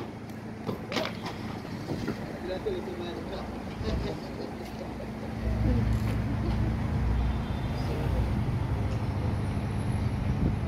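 Car engines running close by in street traffic, with a steady low hum and, from about five and a half seconds in, a louder low rumble as a vehicle moves off or passes.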